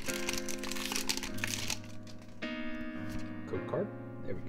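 Booster pack wrapper crinkling as it is torn open and pulled off the cards, for about the first two seconds. Background music with steady held notes continues under it and fills the rest.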